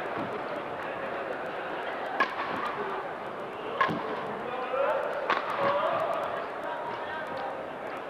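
Badminton rackets striking a shuttlecock in a rally: three sharp hits about a second and a half apart, over the steady murmur of an arena crowd.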